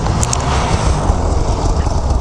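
Snowmobile engines running close by: a steady low engine rumble under a hiss of noise.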